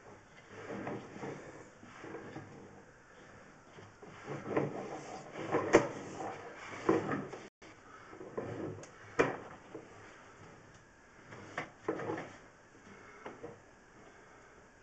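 Sewer inspection camera push cable being fed and pulled through a cast-iron sewer line from a basement clean-out, giving irregular scraping and knocking, with a few sharper knocks in the middle.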